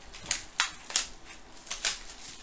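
Cardboard box of trading cards being handled and moved about, giving a handful of short sharp cardboard taps and rustles, about five in two seconds.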